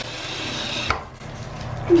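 Plastic instant-ramen packet crinkling as the dry noodles are shaken out into a sink of water, with one sharp knock about a second in, then quieter.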